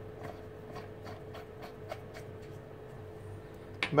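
Faint light clicks and rubbing of a collet and its threaded nut being pressed into the spindle nose of a Proxxon DB 250 mini lathe and tightened by hand. A faint steady hum sits underneath.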